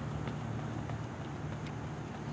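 A runner's footfalls on a rubberised track: faint sharp taps, a few in the two seconds, over a steady low rumble.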